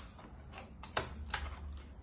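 Small handheld stapler clicking shut through pieces of kraft cardboard box, a few sharp clicks with the loudest about a second in.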